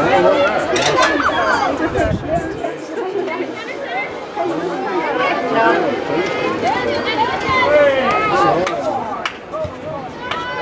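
Many overlapping voices talking and calling out at once, none of them distinct: the chatter of spectators and players at a soccer field. A couple of short sharp knocks stand out, one about a second in and one near the end.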